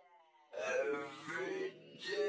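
A sung vocal clip played back slowed to 0.3x speed, its pitch dropped into a drawn-out, wavering wail. It comes in about half a second in and dips briefly near the end.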